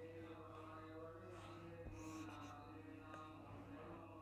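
Near silence: a steady low electrical hum under faint, sustained, slightly wavering tones that sound like distant chanting or music.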